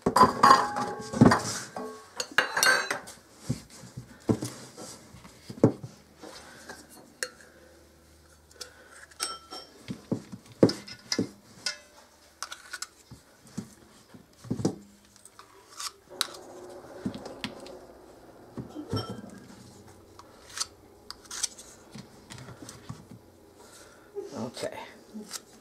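Stainless steel measuring cup and metal spoon clinking, tapping and scraping as shortening is scooped from a tub and packed into the cup, with a quick cluster of clatter in the first few seconds and scattered knocks after.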